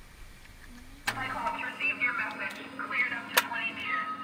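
A voice from the surface comes over the submersible's radio link, clearing Cyclops to 20 metres, over a steady low hum inside the cabin. It starts suddenly about a second in and has a couple of sharp clicks.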